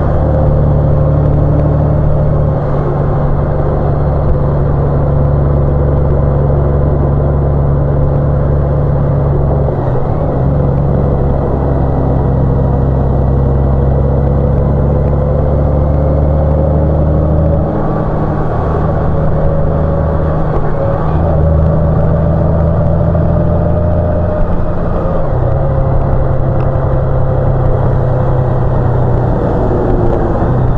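Motorcycle cruising at steady speed, its engine drone running evenly under wind and road noise; the sound dips briefly a little past halfway through.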